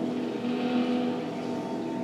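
Film logo soundtrack played through a television's speakers: a held low chord with a whooshing swell that peaks about a second in.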